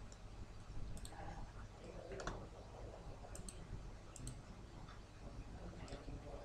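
A handful of faint computer mouse clicks, some in quick pairs, over quiet room tone.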